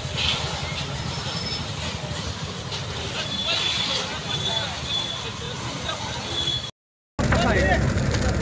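Voices of people talking in the background over a steady low outdoor rumble. Near the end the sound cuts out for about half a second, then comes back louder, with closer talk and the same rumble.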